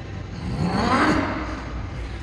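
A man's strained groan that rises in pitch as he drives a heavily loaded plate-loaded chest press, loudest about a second in, then fading.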